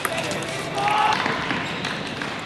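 A few light taps of a table tennis ball, with voices in the playing hall.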